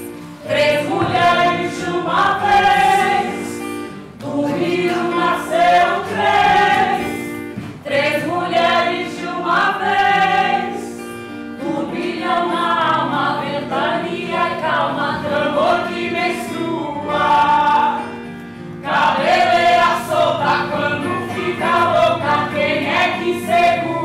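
A group of voices singing a song in Portuguese in phrases of a few seconds each, over steady held lower notes.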